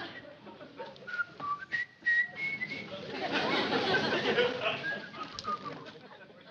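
A few short whistle-like notes, each held briefly, stepping up and down in pitch, heard over a soft background murmur.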